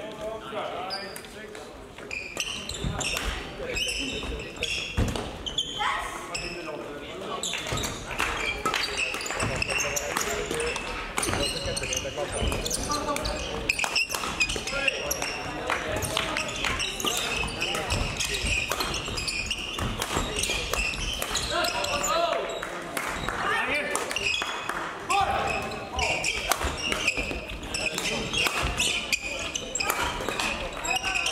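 Badminton hall sound with several courts in play: racket strikes on shuttlecocks, sneaker squeaks on the court floor and players' voices, ringing in the large hall.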